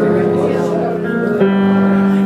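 Jazz piano and bass duo playing, with held notes that change to a new chord about one and a half seconds in.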